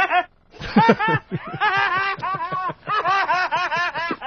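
Laughter: after a brief pause, a long run of quick repeated laughing pulses.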